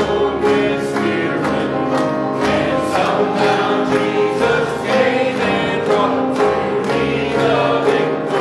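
Congregation singing a gospel hymn together with instrumental accompaniment, at a steady beat.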